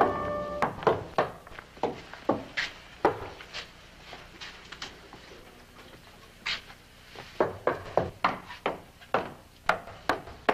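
Music ends about half a second in, followed by a run of sharp, irregular knocks and clacks of hard objects struck or handled, some with a short ring.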